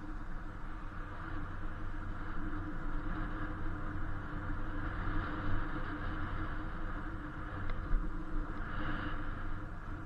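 Steady wind and road noise on a camera riding along on an Inmotion V8 electric unicycle: an even rushing hiss with a low rumble from the tyre on the pavement and a faint steady hum.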